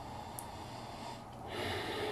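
A man sniffing at the neck of an opened plastic bottle of mate soda to smell the drink, a faint, short sniff near the end.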